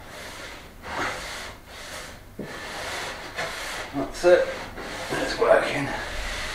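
Damp cloth wiping sawdust off a sanded wooden worktop: a run of short rubbing strokes, with a few brief vocal sounds from the person working, about four seconds in and again near the end.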